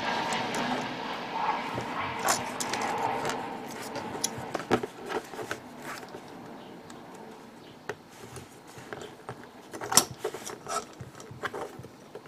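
Small hard plastic parts of a model kit and its display stand clicking and tapping as they are handled and pushed together, in scattered light clicks with one sharper click near the end.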